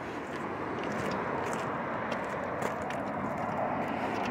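Steady outdoor background noise, with a few light clicks and scrapes as a key works the trunk lock of a 1958 Lincoln.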